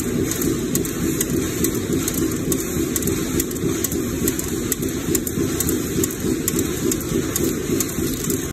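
Fastener-making machinery running steadily: a dense, continuous noise with faint sharp clicks recurring under a second apart.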